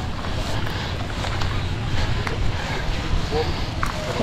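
Open bonfire of cardboard boxes and produce burning, with a few faint scattered crackles and pops, over a steady low rumble of wind on the microphone.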